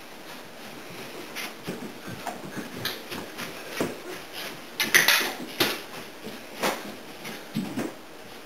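Irregular light thumps and scuffs of a cat running, pouncing and rolling on carpet while chasing a string toy, with a louder cluster of knocks about five seconds in.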